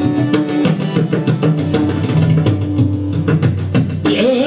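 Harmonium melody with hand-drum strokes: an instrumental passage of devotional Hindustani classical music (haveli sangeet), with no singing.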